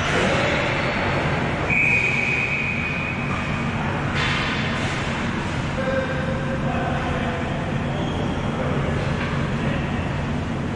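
Indoor ball hockey rink ambience: a steady rumbling drone that fills the large hall, with distant shouts from players at the far end. A high held tone sounds about two seconds in.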